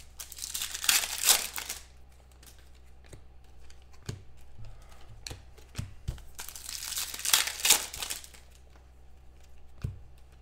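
Foil trading-card pack wrappers being torn open and crinkled by hand, in two bursts each about a second and a half long, one near the start and one about seven seconds in, with light clicks of handled cards in between.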